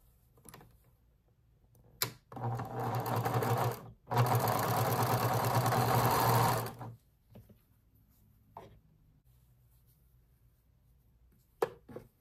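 Electric sewing machine stitching patchwork fabric in two runs, one of about a second and a half and then one of nearly three seconds, with a brief stop between, its motor humming under the rapid needle stroke. A click comes just before it starts, and a couple of light clicks follow after it stops.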